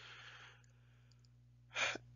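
A man's soft breath in, a brief hiss in the first half-second, over a faint steady hum. A short sound of his voice starting follows near the end.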